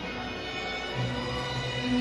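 Mariachi music: a short passage of held notes without singing, between sung lines of the song.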